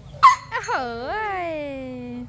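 Young Asian elephant calling with its trunk raised: a short sharp blast, then one long call that rises briefly and then slides down in pitch.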